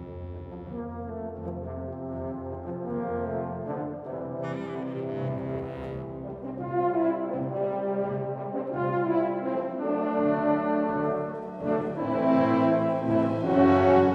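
Concert wind band playing sustained, held brass chords, growing steadily louder through the passage and loudest near the end.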